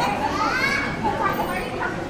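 Chatter of several voices in a hall, with one high-pitched voice that rises and falls about half a second in.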